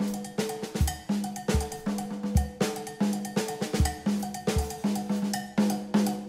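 Drum kit played solo in a jazz set: a fast, dense run of strokes on toms and cymbals with ringing drum tones, and occasional bass drum kicks.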